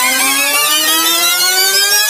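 Motorcycle engine accelerating hard, its pitch rising steadily, dropping back once at the start as it shifts up a gear and then climbing again.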